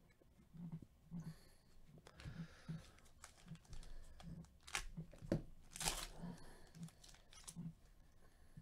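Foil wrapper of a trading-card pack crinkling and tearing, with a few louder rips around the middle, among soft taps of cards being handled.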